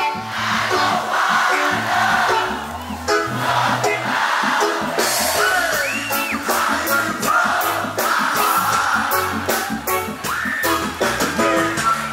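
A reggae band playing live through a PA system, a lead singer's vocal riding over a steady, evenly repeating beat.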